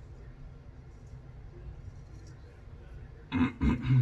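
A man clearing his throat in three short loud bursts near the end, after a few seconds of quiet room tone.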